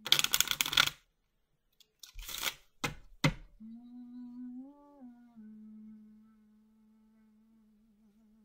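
A deck of tarot cards being shuffled by hand: a loud rustling burst, a second shorter one, then two sharp taps. After that comes a steady low hum from a person humming, which rises briefly about halfway through and then settles.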